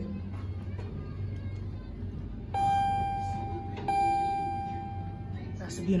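Elevator arrival chime on a ThyssenKrupp traction elevator, two identical dings about a second and a half apart, each ringing out slowly, over a low hum. Two strokes is the usual signal for a car going down.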